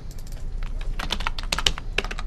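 Typing on a computer keyboard: a run of irregular keystroke clicks that comes quicker after about half a second.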